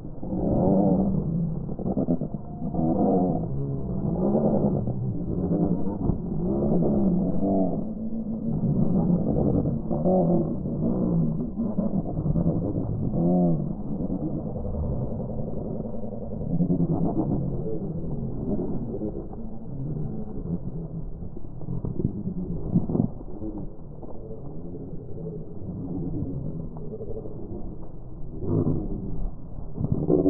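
Ambient audio from the camera's own microphone slowed to one tenth speed, so everything is deep and drawn out: a low rumble with slow, wavering calls of black-headed gulls.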